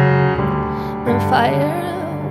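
Solo grand piano playing held chords, with a woman's voice coming in about a second in and singing a slow, gliding line over them.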